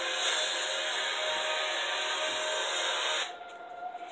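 Film trailer soundtrack: a loud, dense swell of music and noisy effects with several held tones, which cuts off suddenly about three seconds in, leaving a faint held tone.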